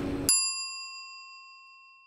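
A single bell ding, an edited-in sound effect: the background noise cuts off abruptly, then one struck bell tone rings and fades slowly over about a second and a half.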